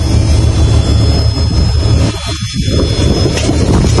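A steady low rumble and roar of a fishing boat's engine, with a thin, steady high whine running over it.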